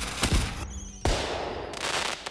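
Fireworks sound effect on an animated title card: a few sharp cracks, then a louder burst about a second in that fades away.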